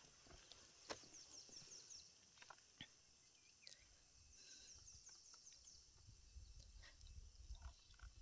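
Near silence: faint outdoor ambience of insects chirring high in pitch in two short spells, one brief faint bird chirp, and a low rumble of wind that rises in the second half.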